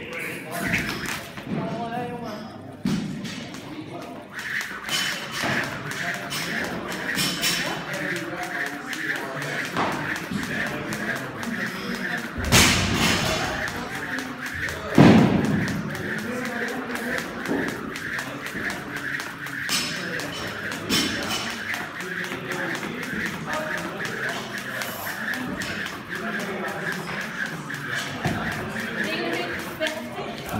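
A speed rope whirring and ticking on the floor in a fast, even rhythm as double-unders are jumped, with two louder thuds about halfway through.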